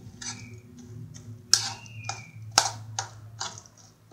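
A hand mixing grated cabbage and carrot with mayonnaise in a plastic bowl: irregular wet clicks and squelches, with two sharper slaps about a second and a half and two and a half seconds in.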